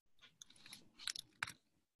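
Faint typing on a computer keyboard: a handful of soft, uneven keystroke clicks.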